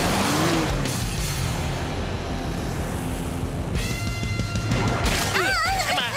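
Cartoon action soundtrack: music with a quad-bike engine sound effect and crash noises. Near the end comes a held tone lasting about a second, then a wavering cartoon yell.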